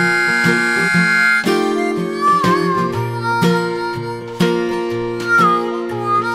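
Harmonica playing the instrumental intro of a slow blues over acoustic guitar accompaniment. It opens on a long held note for about a second and a half, then moves through a melody with bent notes while the guitar keeps a steady rhythm.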